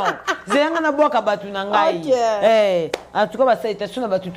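A woman talking animatedly, her voice high and swooping around the middle, with one short sharp click about three seconds in.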